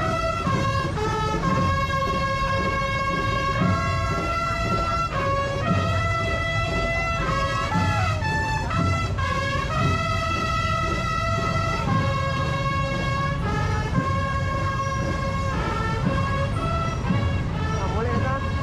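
Brass band playing a tune of held, stepping notes, with crowd voices around it.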